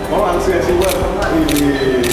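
Men's voices talking, with a few sharp clicks in the second half.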